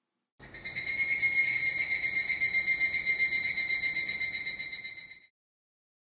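Higurashi (evening cicada) calling: one rapidly pulsing, high-pitched phrase on a steady pitch. It swells in about half a second in and fades out about five seconds in.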